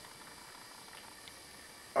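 Faint steady room tone with a light hiss; no distinct sound stands out.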